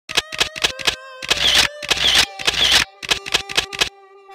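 Opening of a hip-hop track over a held synthesizer tone. A quick run of four sharp clicks is followed by three longer hissing bursts about half a second apart, then five more quick clicks.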